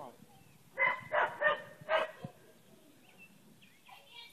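A dog barking four short barks in quick succession, eager for its flying disc to be thrown.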